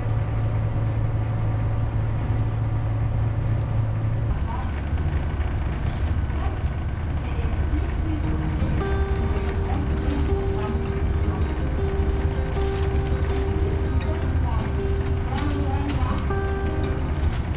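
Sightseeing boat's engine droning steadily, heard inside the passenger cabin; its low hum changes about four seconds in. Held musical tones join in over the second half.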